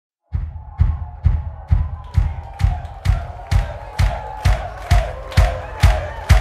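A live band's drum beat starting just after the start: an even kick-drum pulse about twice a second, with crowd voices under it.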